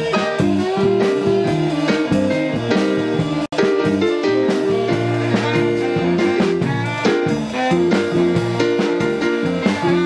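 A live band playing an up-tempo song in rehearsal: electric guitar, electric bass and stage keyboard playing together. There is a momentary dropout about three and a half seconds in.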